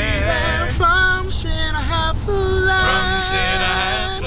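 Male gospel quartet singing a cappella in close harmony: short sung phrases, then a chord held for the last second and a half or so.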